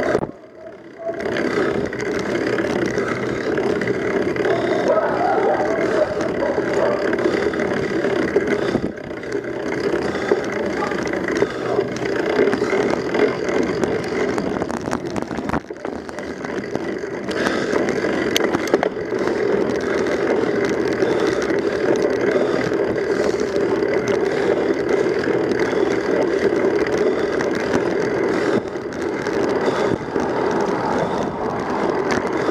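Wind rushing over the camera microphone and tyre noise from a bicycle riding on asphalt, a steady noisy rush that dips briefly about a second in.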